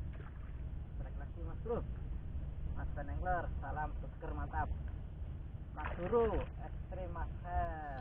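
A steady low rumble of wind on the microphone, with a person's voice making several short, unclear exclamations.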